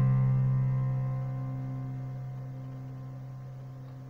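A chord on a Yamaha digital piano, held and slowly fading away.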